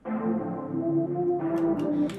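A synth melody played back from the FL Studio piano roll: a low note, then a short phrase of four higher notes moving in small steps and closing with a semitone drop from F to E, over held chords. It is the dark-sounding reggaeton melody being built from notes placed a semitone apart.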